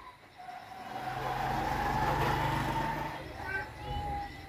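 A motor vehicle passing by, its engine sound swelling to a peak about two seconds in and fading away by about three seconds.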